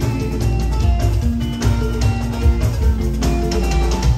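Live band music at a party: guitar lines and held notes over a strong, pulsing bass.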